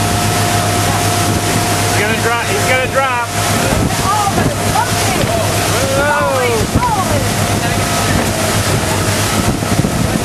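Motorboat engine running at a steady pitch, with heavy wind on the microphone. Voices yell over it twice, about two seconds in and again around six seconds.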